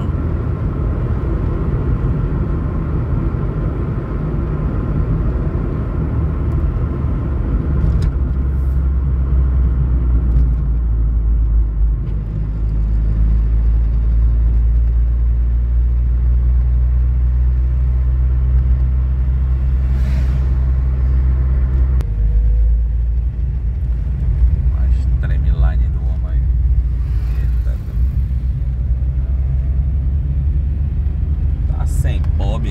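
Car cabin drone while driving: a steady, loud low hum of engine and road noise. Its pitch and tone shift about 8 seconds in and again around 22 seconds.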